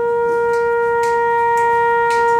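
A single horn, unaccompanied, holding one long steady note in a jazz big-band arrangement.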